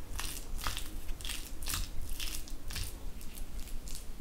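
Chopped boiled egg and mayonnaise filling, with chopped coriander, being stirred in a ceramic bowl: wet, crunchy mixing strokes, about ten in quick succession, two to three a second.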